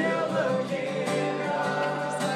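A group of men singing together in unison, live, over a strummed acoustic guitar.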